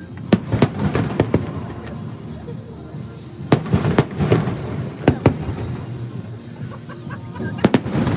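Aerial firework shells bursting overhead in a run of sharp bangs. A cluster comes in the first second and a half, another at about three and a half to four and a half seconds, two more at about five seconds, and a close pair near the end.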